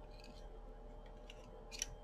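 Faint clicks and light scraping of a loom hook and yarn being worked over the plastic pegs of a round knitting loom, with one slightly louder click near the end, over a low steady hum.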